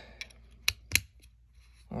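Plastic parts of a small LED door light clicking as they are fitted and snapped together: a faint click, then two sharp snaps about a quarter second apart.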